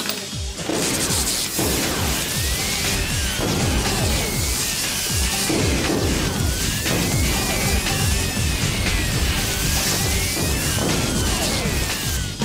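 Sci-fi electrical sound effects of a machine powering up and overloading: crackling, repeated falling zaps, and from a couple of seconds in, warbling tones that slide up and down over and over.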